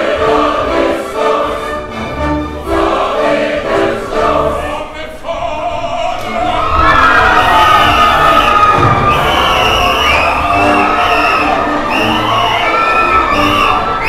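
Opera orchestra and chorus performing a rhythmic passage with a steady bass beat. About six and a half seconds in it grows louder as many voices sing and call out together over the orchestra.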